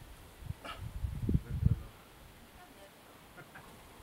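Gusts of wind buffeting the camera microphone, a few uneven low rumbles in the first half, then a low background.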